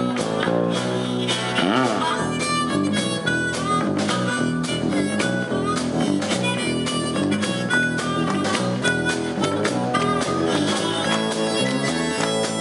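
Live blues band playing: a harmonica plays lead over electric bass, drums and electric guitar.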